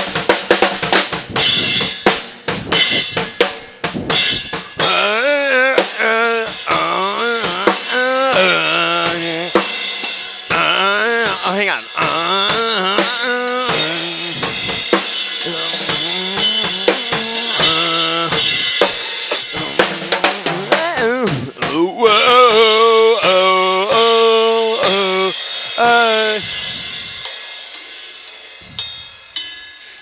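Drum kit played steadily: fast snare and bass-drum strokes under ringing cymbals. A wordless vocal melody comes in over the drums in phrases, and the kit dies away over the last few seconds.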